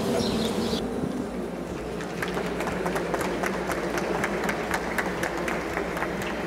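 Sparse, irregular clapping from a few people in a large hall, over a low room hum. Birdsong from the video's soundtrack is heard briefly about the first second.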